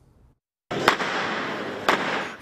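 Background noise of a large hall: a steady rustling hiss that starts suddenly after a brief silence, broken by two sharp clicks about a second apart.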